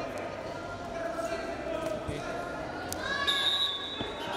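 Voices calling out in a large, echoing sports hall, over dull thumps of wrestlers' feet and hand-fighting on the mat. A sharp click comes just before a higher, held call near the end.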